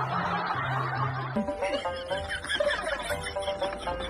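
A woman laughing over background music; about a second and a half in, the music changes abruptly to a different tune with steady notes and a beat.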